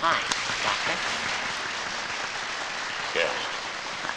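Crowd applauding as band music ends, a steady patter of many hands, with voices calling out briefly near the start and about three seconds in.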